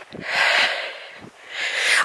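A walker breathing heavily close to the microphone: two long, noisy breaths, the first lasting about a second and the second starting near the end.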